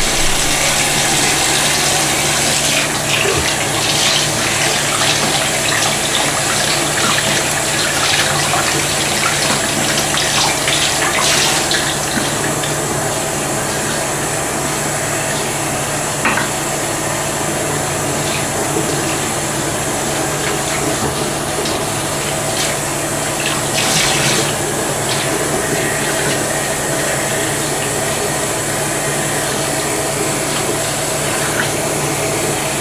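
Bathroom sink tap running steadily, the water splashing over hair and into the basin as hair is washed under it.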